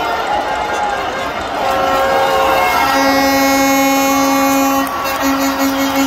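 Stadium crowd noise from a packed football crowd, joined about halfway in by a fan's horn sounding one steady held note. The note breaks into short repeated blasts near the end.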